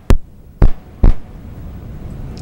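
Three heavy thumps about half a second apart from a handheld microphone being handled, followed by a low steady hum.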